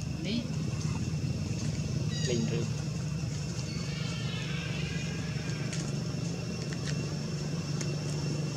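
A steady low mechanical hum, with faint distant voices and a few soft clicks.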